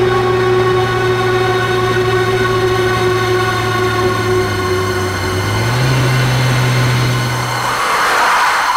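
Car engine running as the car drives in and parks, with a held background music drone over it. The engine note steps up slightly near the end and then cuts off.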